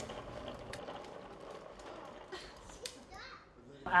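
Faint sounds of a toddler playing with a toy: a few light clicks and knocks, and a faint child's voice near the end.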